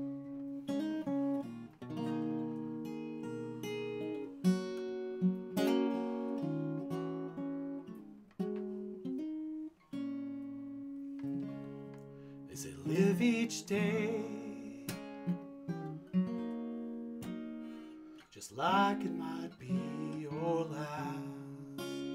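Solo acoustic guitar playing the instrumental introduction to a song: picked notes ringing over one another, with brighter, denser strummed passages around the middle and again near the end.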